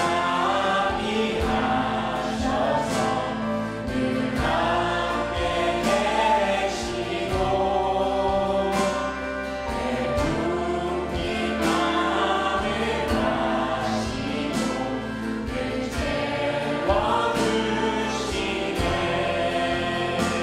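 A mixed praise team of women and men singing a Korean worship song together through microphones, with acoustic guitar accompaniment and a steady beat.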